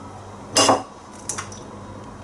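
An egg is knocked against the rim of a ceramic bowl: one sharp crack about half a second in, then a softer click as the shell is broken open.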